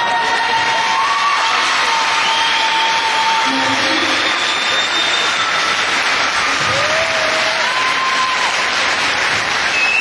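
Audience in a rink applauding steadily, with voices and calls over the clapping.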